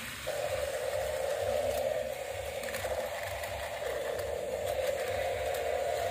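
Small electric motors of battery-powered toy cars running along a plastic toy track: a steady hum that starts a moment in and carries on throughout.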